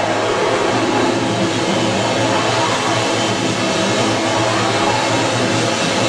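Live rock band playing a loud, dense wall of distorted noise: a steady low bass drone under guitar and tones that sweep slowly up and down in pitch.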